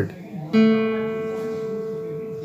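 A single note plucked on an acoustic guitar about half a second in: the third (G) string fretted at the second fret, giving an A. It rings on and slowly fades.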